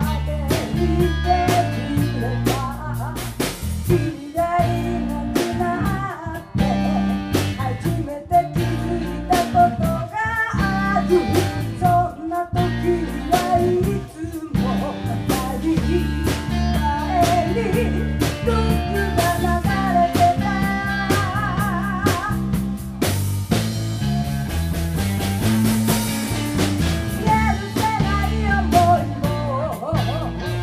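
Live rock band playing a song: electric guitars, electric bass and drum kit, with a singer. Cymbals come in stronger a little past two-thirds of the way through.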